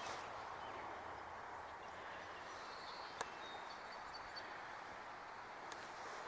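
Faint outdoor marsh ambience: a steady low hiss, with a few short, high chirps around the middle and a single sharp click about three seconds in.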